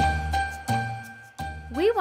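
Background music with a bell-like tinkling over a low beat that pulses about every 0.7 seconds. A woman's voice begins near the end.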